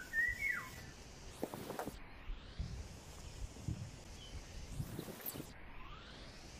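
Outdoor garden ambience. A bird gives a short, falling chirp right at the start, followed by two brief rustling swishes and a few soft low thuds.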